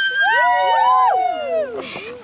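A group of teenage girls shouting a drawn-out cheer together. Several voices at different pitches hold and rise, then slide down and fade near the end.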